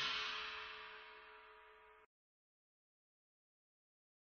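The last chord of a channel-logo intro jingle dying away over about two seconds, then dead silence.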